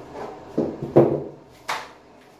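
Handling noise as toiletries are fetched: a few knocks and scrapes, the loudest about a second in, then a short sharp rustle near the end.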